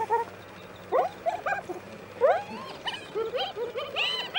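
A group of spotted hyenas giggling: short, rising, pitched whoops in quick overlapping series from several animals, with bursts about a second in, again past the two-second mark and near the end. The giggling is a sign of nervous energy and excitement over food, not of enjoyment.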